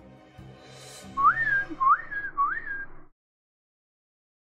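A person whistling three short notes, each sliding up and then holding, answering with the same whistle just heard. The sound stops abruptly a little after three seconds in.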